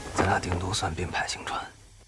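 Film dialogue: a voice speaking a line in Chinese, trailing off near the end.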